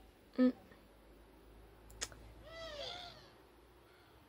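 A single short meow-like call that rises and then falls in pitch, about two and a half seconds in, just after one sharp click.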